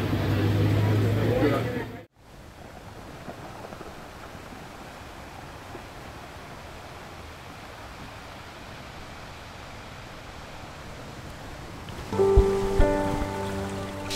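Windy waterside ambience with a low hum, cut off abruptly after about two seconds, followed by a faint steady hiss. Background music starts near the end.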